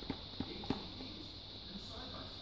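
Leather baseball glove being squeezed and flexed by hand, with three or four soft clicks and taps in the first second as the leather and laces work, then faint room tone.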